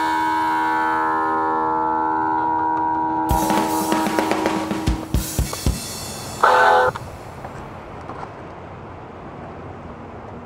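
Electronic guitar T-shirt's synthesized guitar chord ringing out for about three seconds, then a few scattered sharp hits and one short, loud note about six and a half seconds in, after which only faint background hiss remains.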